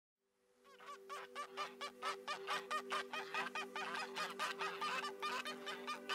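Ducks quacking in a fast, even series of about four calls a second, fading in after the first second, over a held low music chord.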